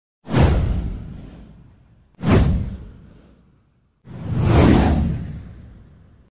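Three whoosh sound effects from a title-card intro, each a sudden rush that fades away over about two seconds. The third builds up more gradually before fading.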